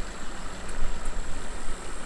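Wind buffeting a camera microphone: an uneven, gusting low rumble, over the hiss of a running creek.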